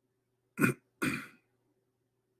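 A man clearing his throat: two short bursts about half a second apart, the second slightly longer.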